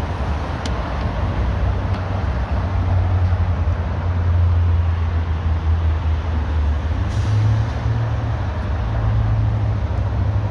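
A motor vehicle's engine running nearby: a steady low drone over traffic noise, shifting up slightly in pitch about seven seconds in.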